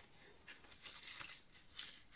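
Faint scratchy rubbing and scraping strokes, a few in two seconds, from working acetone-softened glue, gone to a gel, off a laptop trackpad circuit board.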